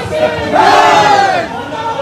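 A crowd of men shouting a slogan together in one long, loud cry that starts about half a second in and ends about a second later, with crowd noise around it.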